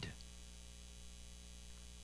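Faint, steady electrical mains hum: a low buzz with evenly spaced overtones, after a man's voice trails off at the very start.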